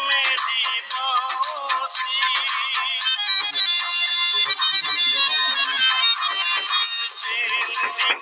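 A song with a male sung vocal line; about three seconds in the voice gives way to an instrumental passage of held notes, and the singing returns near the end.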